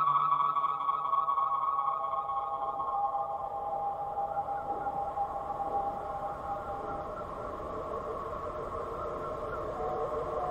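Ambient electronic drone: several sustained, slowly wavering tones with no beat, fading down over the first several seconds and then holding low.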